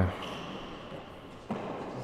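A hardball handball bouncing once on the court floor with a single sharp knock about one and a half seconds in, against quiet hall tone.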